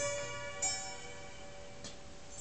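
Slow chime-like melody: bell-like notes struck about two-thirds of a second apart, each ringing on and fading away, with a short click near the end.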